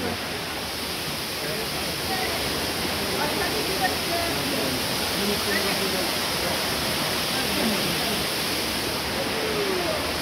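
Steady rush of the 27-metre Kamieńczyk Waterfall, a mountain waterfall falling in three cascades into a rocky pool. Faint voices are heard under it.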